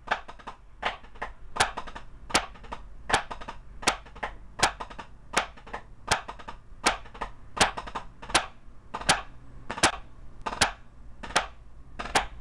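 Drumsticks striking a drum practice pad in the flam drag rudiment: an accented stroke about every three-quarters of a second, in time with an 80 bpm metronome, with quick, quieter grace strokes between the accents.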